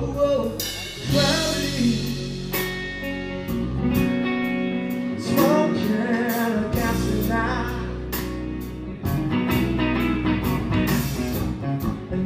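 Live band playing a slow blues-rock ballad: electric guitar, bass, keyboard and a drum kit with regular cymbal hits, with a sung vocal line of bending, held notes over it.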